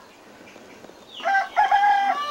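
A rooster crowing: one drawn-out call that starts just over a second in after a low lull, held on a few steady pitches.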